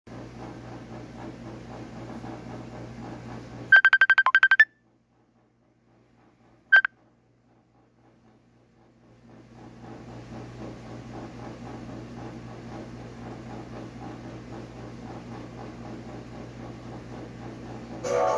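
A quick run of about ten loud, high electronic beeps, then a single beep about two seconds later, with near silence between. From about nine and a half seconds a steady low hum and hiss fades in.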